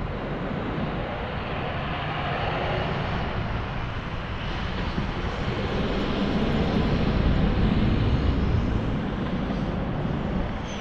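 Wind rushing over the microphone of a camera riding on a moving bicycle, mixed with tyre noise on pavement. It is a steady rush that swells a little past the middle.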